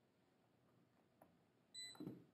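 Near silence, then near the end one short high electronic beep from a handheld digital multimeter, followed by a brief rustle of it being handled.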